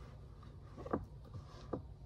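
Faint handling sounds of hands on a cloth-covered table, straightening a slipping table cloth: two brief soft rustles, about a second in and near the end, over a low steady hum.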